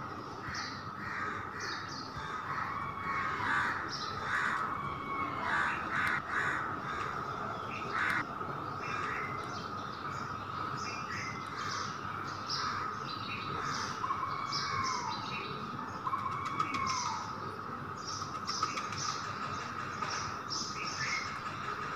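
Birds calling: short high chirps repeat throughout, with harsher calls mostly in the first half and a couple of falling calls near three-quarters through, over a steady high-pitched hum.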